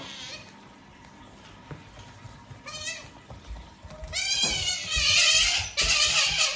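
Otter giving high-pitched squealing calls: a short one about three seconds in, then louder, longer ones from about four seconds on.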